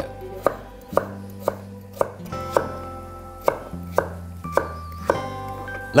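A large kitchen knife chopping peeled pumpkin into chunks on a wooden cutting board, with a sharp knock of the blade on the board about twice a second.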